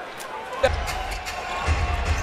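Basketball arena sound during live play: crowd noise and faint arena music, with a few sharp knocks of the ball on the hardwood court. A deep rumble comes in just after half a second in.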